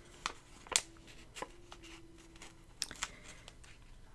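Dot stickers being peeled off a paper sticker sheet and pressed onto a planner page: a handful of faint, short, crisp ticks and paper rustles.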